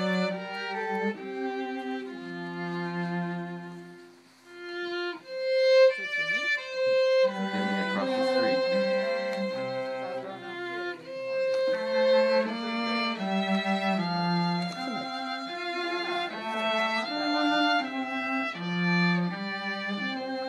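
Live violin music: a bowed tune of held notes, with a lower part sounding beneath the melody much of the time. It breaks off briefly about four seconds in, then carries on.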